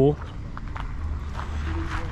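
A steady low rumble of outdoor background noise, with a few light steps on gravel.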